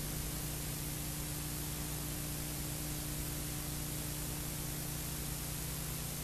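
Steady hiss with a faint low hum: the bare noise floor of an old analogue broadcast recording, with no programme sound.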